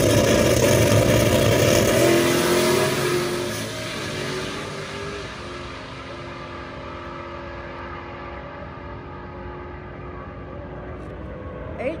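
A Ford Mustang drag car and the car in the other lane launching hard off the start line at full throttle, engine pitch climbing through the gears as they pull away down the quarter mile, then fading steadily into the distance.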